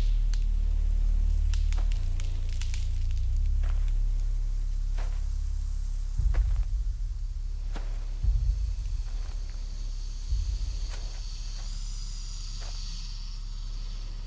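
Dry corn stalks and leaves rustling and crackling as someone moves through a cornfield, heard as scattered crisp rustles over a low steady rumbling drone. The drone swells in heavy pulses about three times in the second half.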